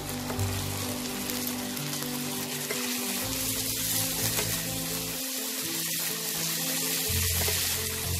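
Chopped onions sizzling steadily in hot mustard oil in a non-stick wok, stirred with a wooden spatula.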